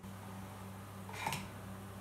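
A low steady hum, with a brief sharp handling noise about a second and a quarter in as the plastic siphon tubing is lifted.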